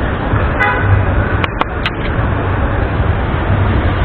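A bus engine running close by with a steady low rumble, a short vehicle horn toot about half a second in, and a few sharp clicks a second later amid street traffic.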